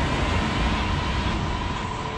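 Closing sound-effect tail of an electronic track: a rumbling, hissing noise with a steady high tone running through it, slowly fading.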